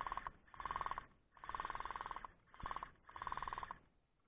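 Electric gel blaster firing five short full-auto bursts, each a rapid, even rattle of shots; the third and fifth bursts are the longest.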